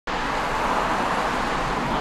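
Cars passing on a two-lane road: a steady rush of tyre and engine noise.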